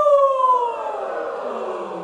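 A group of voices singing one long downward vocal slide together as a voice exercise. One clear voice starts high and is joined by many voices, gliding down in pitch and thickening into a blended chorus.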